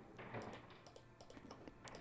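A few faint, scattered computer mouse clicks over near silence.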